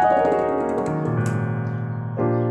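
Piano sound from a Nord Stage keyboard: an Eb minor 7(11) chord rings on, and a deep bass note is struck about a second in.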